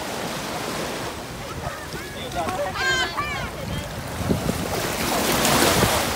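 Small sea waves washing in over shallow water at a sandy beach, a steady rush of surf that swells louder near the end as a wave breaks close by.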